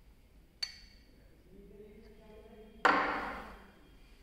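Glassware handled on a wooden lab bench while a urine sample is poured from a glass beaker into a test tube: a sharp glass clink with a brief high ring under a second in, a faint trickle of the liquid, then a louder knock about three seconds in as glassware is set down on the table, fading over about a second.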